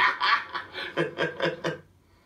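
A man laughing, heard from a television: a run of quick, breathy chuckles that tails off near the end.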